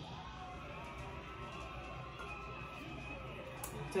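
Faint background music, steady and low, with no clear sound from the tasting itself.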